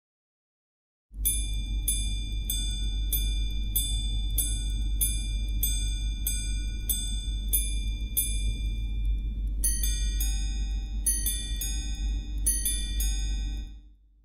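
Patek Philippe minute repeater striking 12:45 on its gongs. First come twelve evenly spaced ringing hour strikes on the low gong. Then come three quarter 'ding-dong' pairs on the high and low gongs, over a steady low hum.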